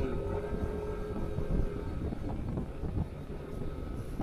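Motorcycle engine running steadily at cruising speed, with a continuous low road and wind rumble on the bike-mounted camera's microphone.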